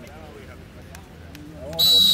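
A referee's whistle blown once near the end, a single sharp blast of about half a second, over players' shouting.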